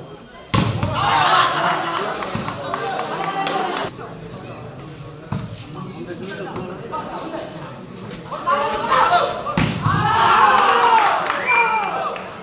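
Volleyball being struck hard by hand: sharp smacks, the loudest about half a second in and again about two and a half seconds before the end, with a few weaker hits between. After each big hit, a crowd of spectators shouts for a few seconds.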